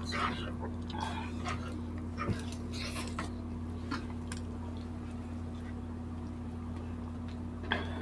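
Eating sounds: chewing, lip smacks and fingers picking through food come in a cluster over the first four seconds, with one louder smack near the end. A steady low hum runs underneath.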